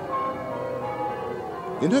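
Church bells ringing, several steady tones at different pitches overlapping.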